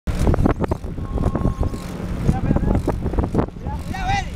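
Wind rumbling on the microphone and the rattle and clatter of a bicycle ridden over asphalt, with irregular knocks throughout.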